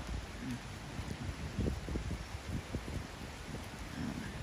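Faint outdoor background noise with an uneven low wind rumble on the microphone.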